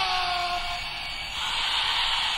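Club crowd cheering, with one long whoop trailing off in the first half-second over a dense hiss of crowd noise.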